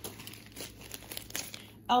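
Clear plastic bags of wax melts crinkling in quick, irregular crackles as they are handled and one is picked up.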